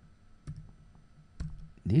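Computer keyboard keystrokes: a few sharp clicks, the clearest about half a second in and about a second and a half in, as a formula is typed.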